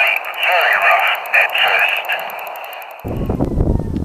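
A marine weather forecast heard through a small radio speaker: a thin, tinny voice over a fast regular ticking in the hiss. It cuts off about three seconds in, giving way to wind buffeting the microphone.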